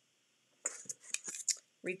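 A quick run of light clicks, taps and rustles as hands handle cardstock pieces and small craft tools on a work mat, starting about half a second in.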